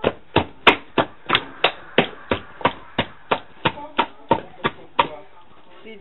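A hand beating runny yeast batter in a stainless steel bowl: sharp, wet slaps in an even rhythm of about three a second, stopping about five seconds in.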